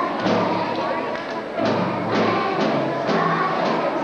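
Children's string ensemble of cellos and violins playing a tune in steady bowed notes, changing about twice a second.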